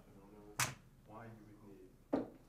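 Faint, distant speech from an audience member asking a question, with one sharp click about half a second in that is the loudest sound.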